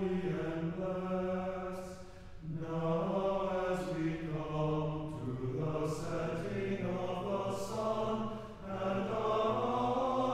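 Church choir singing a cappella chant in held chords, the voices moving together from note to note. The singing breaks off briefly about two seconds in and again near the end.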